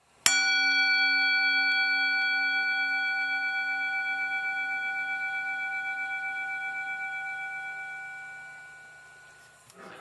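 A single struck metal bell tone, hit once and left to ring out. It has several steady overtones and a slow pulsing wobble, and fades away over about nine seconds.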